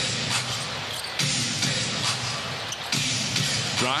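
Basketball game sound: music over the arena PA with crowd noise, and a basketball being dribbled on the hardwood court. The music comes in sections that start abruptly about every second and a half.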